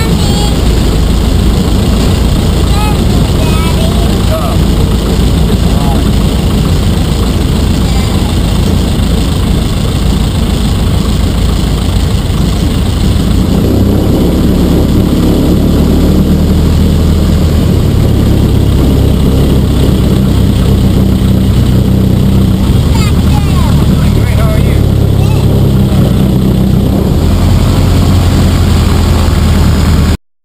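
1946 Piper J-3 Cub's four-cylinder engine and propeller running loudly at low power on the ground, heard from inside the cockpit. The engine note changes about halfway through, with a stronger low hum.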